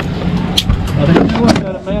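Camera handling noise with a few sharp knocks as a tripod and camera are stowed in a pickup truck, with voices in the background.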